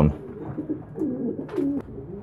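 Domestic pigeons cooing, low coos that rise and fall in pitch, with a faint click about one and a half seconds in.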